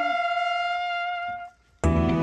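Hunting horns blowing the end-of-hunt call, holding its final note long and steady until it stops about one and a half seconds in. Just before the end, gentle background music begins.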